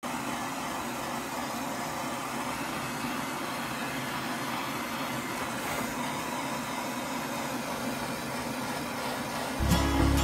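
Handheld gas torch burning with a steady hiss as its flame scorches a cedar arrow shaft to darken it.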